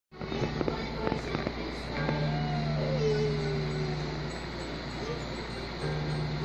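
Acoustic guitar strings slapped and plucked by a baby's hand, with sharp clicks at first, then a low open string ringing for about two seconds and again near the end. A short falling vocal sound, like a baby's cry of 'aah', runs over the ringing string.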